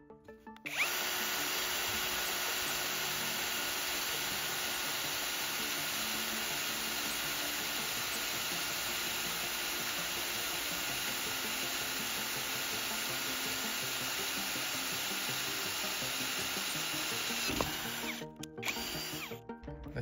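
Parkside Performance PSBSAP 20-Li C3 cordless drill on speed one, driving a 6 mm twist bit into 3 mm sheet steel. The motor starts about a second in, runs at a steady pitch as the bit cuts for some sixteen seconds, then stops.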